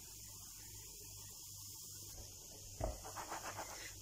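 Faint steady hiss, then about three seconds in a knock followed by quick scraping and rattling as the frying pan is turned on the gas stove's grate.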